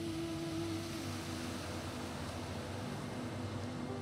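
An ocean wave breaking and washing up the sand: a hiss that swells and then fades away near the end. Slow, soft background music plays underneath.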